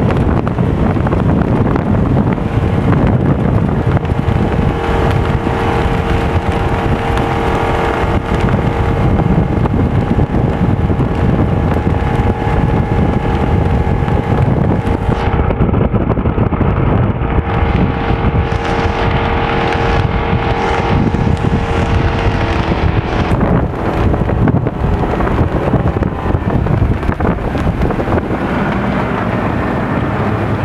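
Rinker 242 Captiva bowrider running at speed: heavy wind buffeting the microphone over the steady drone of its engine and the rush of its wake.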